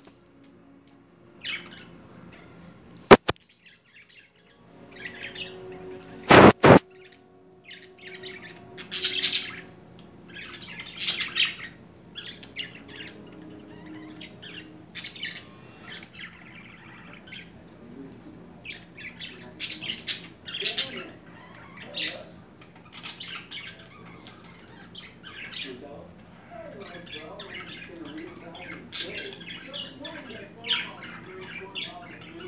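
Budgerigars chirping and chattering in their cage, a steady run of short high calls. Two sharp knocks, the loudest sounds, come about three and six and a half seconds in.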